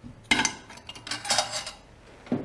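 Cutlery clinking against ceramic dishes in two short clusters, about a third of a second in and again around a second and a half in.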